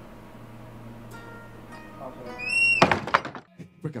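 Steady low electric hum from the band's amplified setup. A little over two seconds in comes a short rising pitched tone, then a quick cluster of knocks and clicks from instruments being handled before the band starts.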